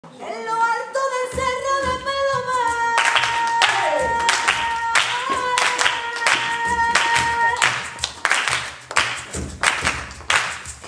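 Flamenco singing: a voice holding long, drawn-out notes, joined from about three seconds in by sharp rhythmic hand clapping (palmas).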